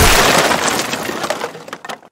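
Sound effect of a crate smashing apart: a sudden loud crash, then a rattle of breaking pieces and falling debris that fades away over about two seconds.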